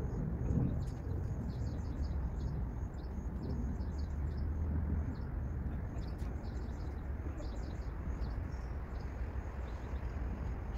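Small birds chirping in quick, short high notes again and again, over a steady low rumble.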